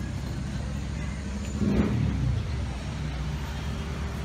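Street traffic: a car engine's steady low rumble, swelling as a car passes close by just under two seconds in.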